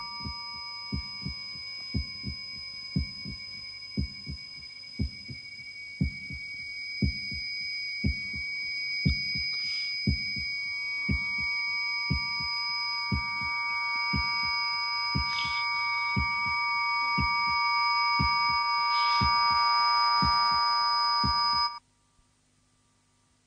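Film sound effect of a slow heartbeat-like thudding, about one beat a second, some beats doubled, under several steady high-pitched whistling tones. The tones swell louder through the second half and all of it cuts off abruptly near the end. It is the kind of effect used to portray ringing in the ears as hearing fails.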